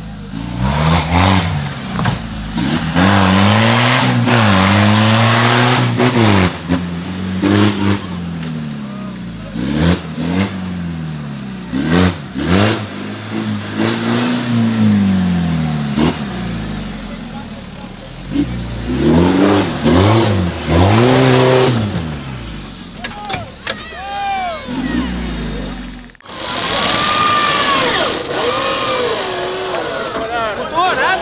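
Off-road trial buggy's engine revving hard in repeated bursts, its pitch climbing and dropping again and again as it drives through dirt mounds, with scattered knocks. After a sudden cut near the end, voices of the crowd shout.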